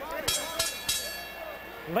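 Ringside bell struck three times in quick succession, its tone ringing on afterward over the arena crowd noise. It is the signal that the fight's decision is about to be announced.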